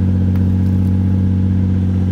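Nissan 240SX with a swapped-in VQ V6 engine idling steadily.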